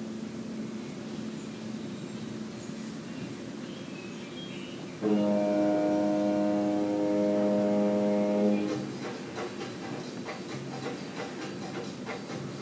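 A ship's horn gives one long steady blast of about three and a half seconds, starting about five seconds in. It is heard from a film soundtrack over loudspeakers in a room, with a low steady hum before it and faint scattered knocks after it.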